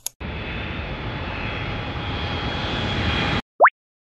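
A short pop as the sound button is pressed, then a jet engine sound effect: steady engine noise with a thin high whine, growing a little louder, cut off suddenly after about three seconds. A quick rising whistle follows near the end.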